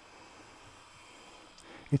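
Metal bench plane taking a thin shaving along a hardwood edge: a faint, even hiss of the blade cutting.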